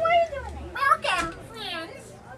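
Children's high-pitched voices calling out in several short, separate shouts, one near the end gliding in pitch.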